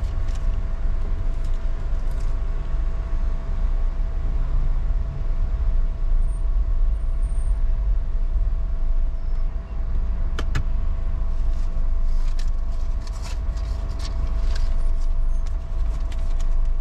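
A car heard from inside its cabin: a steady low engine and road rumble with a faint constant hum over it. A sharp click comes about ten seconds in, and a few lighter clicks and knocks follow near the end.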